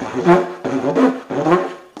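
Didgeridoo played in a rushed, fast rhythm: three quick pulses with brief breaks. The hurried playing makes the sound come out messy rather than clear.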